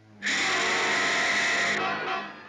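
A sudden, loud orchestral horror-film music sting begins about a quarter second in. It is a dense held chord that lasts about a second and a half and then fades away.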